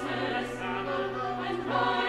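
Chamber choir singing in sustained harmony with string quartet accompaniment, a low note held steadily underneath. Sung 's' consonants hiss briefly at about half a second and again near the end.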